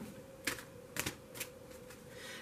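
Tarot cards being handled as the deck is picked up: three short, crisp card clicks about half a second apart, over a faint steady hum.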